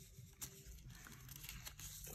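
Faint rustle and crinkle of a thin clear plastic photocard sleeve being handled, with a few soft ticks as the card slides out of it.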